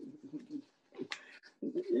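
A faint voice murmuring and trailing off, with a soft click about a second in, then a man's voice starting to laugh near the end.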